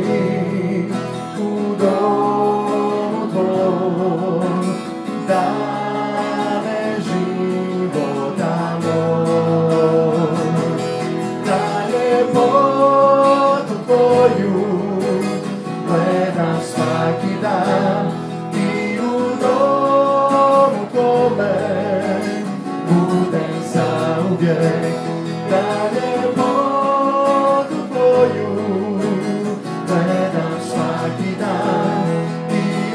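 Live worship band playing a song, led by strummed acoustic guitar with keyboard and a sung melody.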